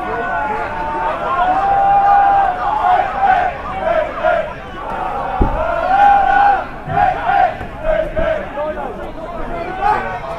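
Football crowd and players shouting over one another, several raised voices overlapping with some long drawn-out calls. A single dull thud about five and a half seconds in.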